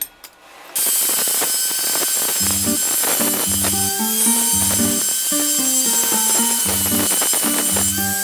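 Angle grinder working steel: a loud, steady, high hiss with a whine in it, starting about a second in and stopping sharply at the end. Background music with a plucked bass line plays under it.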